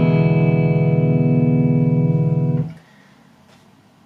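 An open-position E7 chord on a Vigier electric guitar, played with a clean tone. It is the E chord shape with the ring finger lifted, so the open D string adds the minor seventh and gives the chord a bluesy colour. It rings steadily and is damped suddenly a little under three seconds in.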